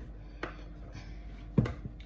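Kitchen handling noise while white chocolate pieces are put into red velvet cake batter: a light click about half a second in, then one louder knock a little over a second and a half in.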